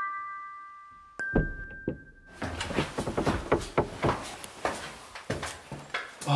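A bell-like musical sting of struck notes ringing out and fading, with a last note about a second in. From a little over two seconds in, a quick run of footsteps and knocks follows over room noise.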